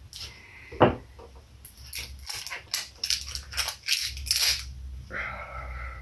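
A plastic seal being cut and peeled off the neck of a small glass hot-sauce bottle: one sharp snap about a second in, then a couple of seconds of quick crackling and crinkling as the plastic tears away.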